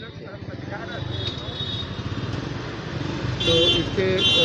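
Street traffic: a vehicle engine runs close by and grows louder, then a horn honks near the end.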